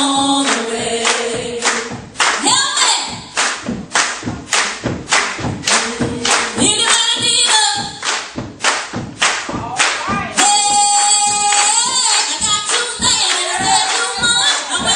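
Gospel song sung by singers on microphones with a congregation clapping on the beat, about two claps a second.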